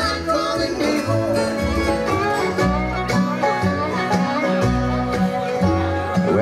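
Live bluegrass band playing an instrumental break between sung lines: banjo, fiddle and guitar over an upright bass.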